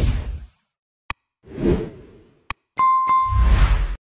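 Animated subscribe-button sound effects: a whoosh, a sharp mouse click, a second whoosh and click, then near the end a bright bell ding with another click under a low whoosh.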